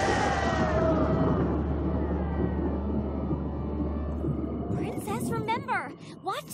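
Cartoon thunderclap from a lightning strike, rumbling on deep and steady for about four seconds while held notes of the score fade above it. Near the end a wavering, warbling pitched sound rises and falls.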